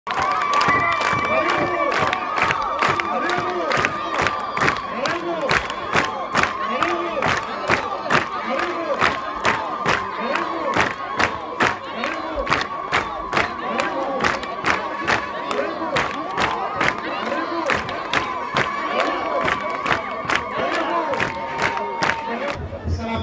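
A large crowd cheering and chanting over steady rhythmic hand-clapping, about two to three claps a second, with a steady high tone held through most of it.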